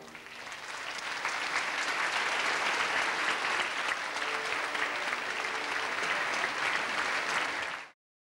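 Theatre audience applauding: the clapping swells over the first second once the orchestra's final chord has stopped, holds steady, and cuts off abruptly near the end.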